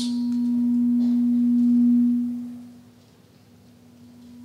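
Feedback from a handheld microphone through a PA system: a steady low tone that swells, fades out about two and a half seconds in, and starts building again near the end. It comes from the mic held close to the body and stops when the mic is pulled away.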